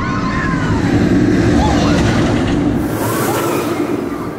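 Rocky Mountain Construction hybrid roller coaster train rumbling along its steel-railed track, swelling to its loudest midway and then easing, with riders' voices shouting over it.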